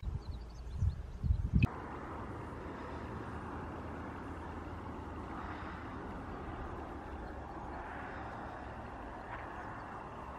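Outdoor field ambience: wind rumbling on the microphone in the first second and a half, then a steady hiss of open-air background noise.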